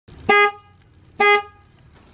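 Chevrolet Duramax pickup truck's horn giving two short blasts about a second apart, set off from the key fob remote.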